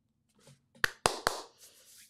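Three short, sharp clicks close together about a second in, the middle one trailing off into a brief hiss, in an otherwise quiet small room.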